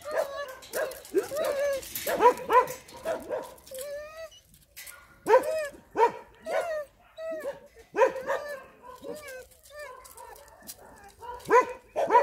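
A dog barking and yelping over and over, short high calls that mostly drop in pitch, coming in quick runs, with a brief lull about nine seconds in.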